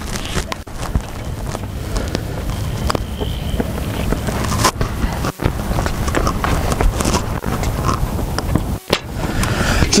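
Wind buffeting the microphone, a steady, dense rumbling noise with a few faint ticks.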